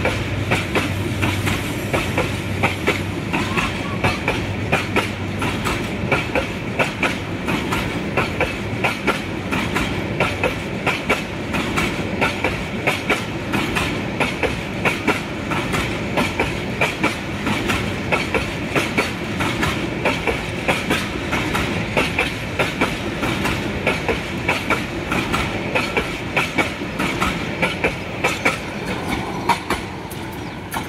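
Bangladesh Railway intercity passenger coaches rolling past at speed, their wheels clacking over the rail joints in a steady, fast rhythm over a continuous rolling rumble. The sound eases off slightly at the very end as the last coach passes.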